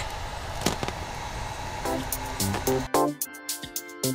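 Handling noise with a couple of sharp crinkles as white vinyl wrap film is stretched by hand over a bumper, giving way about halfway through to background music with a steady beat, which is all that is left by the end.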